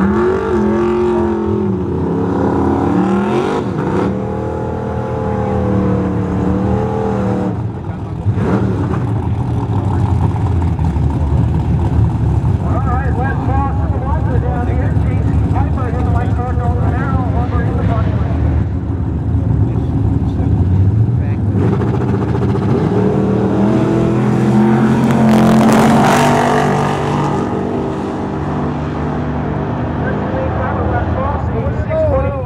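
Two drag-race cars' engines idling and blipping their throttles at the starting line, then a rising, loudest run of hard acceleration as the cars launch down the strip.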